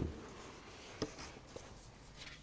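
Sheets of paper being handled and shuffled at a wooden lectern, with a short sharp tap about a second in and a softer one about half a second later.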